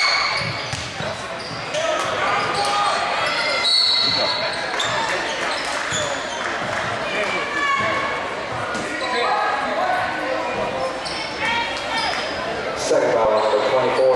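Gymnasium crowd talking and calling out during a basketball game, with a basketball bouncing on the hardwood court and short high squeaks, all echoing in the large hall. The crowd grows louder near the end.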